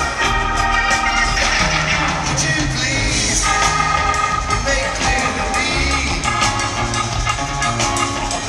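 Live rock band playing an instrumental passage, with electric guitar, keyboards and drums, recorded from the audience.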